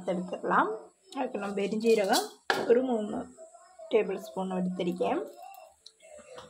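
Mostly a woman talking, with a single sharp metallic clink about two and a half seconds in, as something is knocked against the pan.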